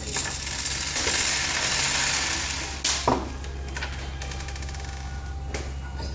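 Small hard objects rattling and clicking, with a sharp click near the middle and then a quick run of ratchet-like clicks, over a steady low hum.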